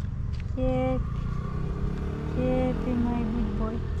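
A steady low rumble of a vehicle engine, with a woman's voice cooing a few short 'da' syllables over it.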